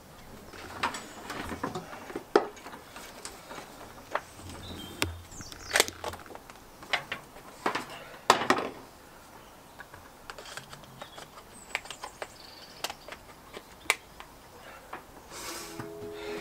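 Scattered light clicks and knocks from handling blue hook-up plugs and cables at a shore-power bollard, with a few faint bird chirps.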